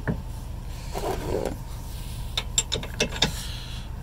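Aluminium hitch shank shifting in a steel trailer-hitch receiver: a short scrape about a second in, then several light metal clicks and knocks as the hitch is settled and the hitch pin is fitted.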